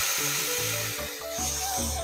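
Water poured from a steel tumbler onto sugar in a steel kadai, a steady hissing splash, over background music.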